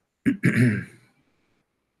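A man coughing, one short rough burst about a quarter second in that dies away within a second.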